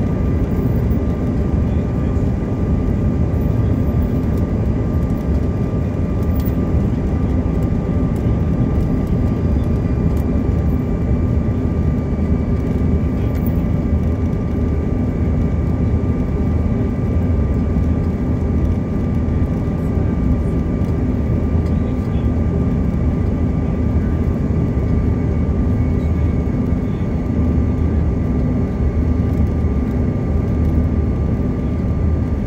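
Jet airliner cabin noise on descent to land: a steady, loud rumble of the engines and rushing air, with a thin, steady high tone running through it.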